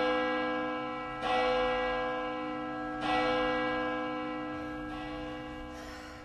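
A large bell tolling: it is struck at the start, again about a second in and again about three seconds in, each strike ringing on and fading slowly.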